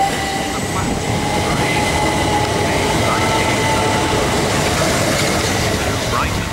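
Southern Class 377 Electrostar electric multiple unit passing close at speed as it departs: a loud, steady rush of wheels on rail and moving air, with a faint steady whine over it.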